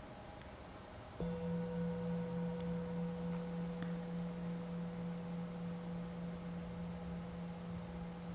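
Singing bowl struck once about a second in, ringing with a low steady tone and a higher overtone, wavering slightly as it slowly fades: the signal to begin a short meditation.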